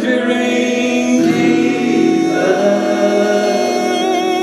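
Live acoustic guitar strummed under long, held sung notes that shift pitch a couple of times.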